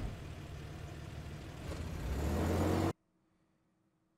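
A minivan's engine running as it pulls away, rising near the end, then cut off abruptly about three seconds in, leaving near silence.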